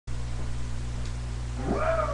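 Steady low electrical hum and hiss from a webcam microphone, with a man's voice starting to call out near the end.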